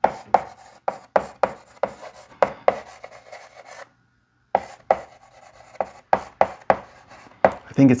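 Chalk tapping and scratching on a blackboard as a few words are handwritten in quick, irregular strokes, with a short pause about halfway through.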